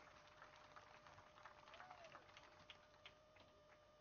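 Near silence: faint room tone with a faint steady hum and a few soft ticks.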